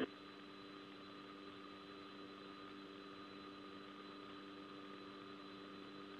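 Faint steady hum made of several held tones over a low hiss.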